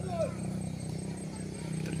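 A steady low hum over faint open-air ambience, with a brief snatch of a voice just after the start.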